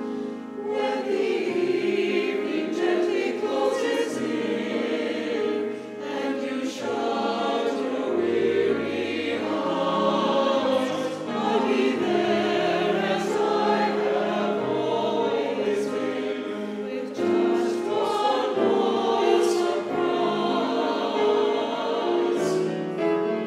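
Small church choir of mixed men's and women's voices singing an anthem in parts, with notes held and changing steadily.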